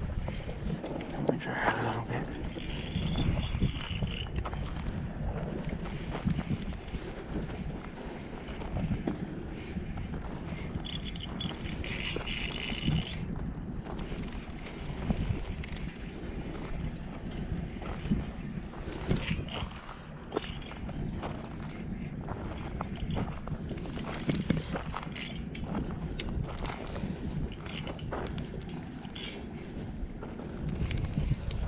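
A Shimano Curado DC baitcasting reel being cranked on a lure retrieve, with ticking and knocking from the reel and rod handling over a steady rumble of wind on the microphone. Two short, higher-pitched whines, a few seconds in and about twelve seconds in, fit the reel's line paying out on a cast.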